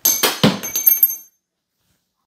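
A small steel engine part clinking against the bench several times in just over a second, each strike leaving a clear high metallic ring.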